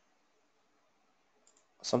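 Near silence, broken by one faint, brief click about one and a half seconds in. A man's voice starts just before the end.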